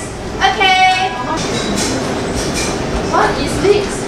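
Classroom din of young children chattering and moving about, with a high voice calling out briefly about half a second in.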